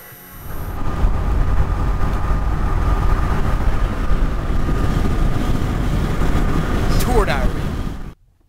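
Road and engine noise inside a moving van, a dense low rumble with a steady high whine over it. A short rising sound comes near the end.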